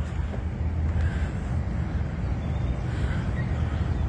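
Steady low rumble of outdoor background noise, with no single event standing out.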